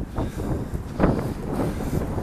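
Wind buffeting the camera microphone: an uneven low rumble with brief louder surges, one just after the start and one about a second in.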